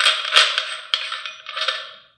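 Metal threads scraping and clicking as a 2-inch adapter is screwed by hand onto the fine-threaded front of a CCD astronomy camera, with a sharp click about a third of a second in. The sound fades out near the end.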